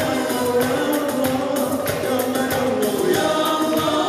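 Live band music for belly dance: a male singer on microphone over keyboard and plucked lute, with a steady beat of hand-drum strokes.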